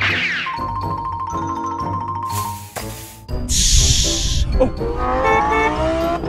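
Background music with chiming mallet tones and two short whooshes. In the last second and a half a Lamborghini Huracán's V10 engine revs up, rising steadily in pitch.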